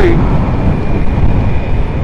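Wind buffeting the microphone with a steady low rumble, over a motorcycle riding along a city road at about 50 km/h.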